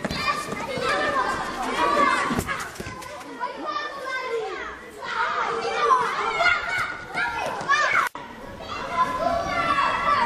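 Many children's voices chattering and calling out at once in a schoolyard; the sound cuts out for an instant about eight seconds in.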